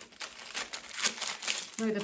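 Plastic packaging crinkling and crackling in the hands, a rapid irregular run of crackles, as small shelf-mounting parts are unwrapped.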